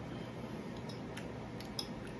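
A metal fork clicking against a plate while eating: a few light clicks, the sharpest near the end, over steady low background noise.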